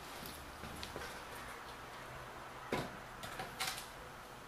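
Handling of a Mazda 13B rotary engine's cast-iron rear housing as it is picked up and set onto a steel platform scale: a few faint clicks, then a knock about three-quarters of the way through and a cluster of smaller knocks just before the end.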